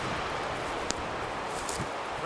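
Wind noise on the microphone outdoors, a steady hiss, with one click a little before a second in.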